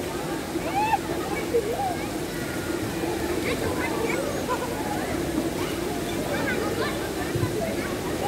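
Busy outdoor swimming-pool ambience: scattered voices of many people talking and calling across the pool over a steady rush of moving water.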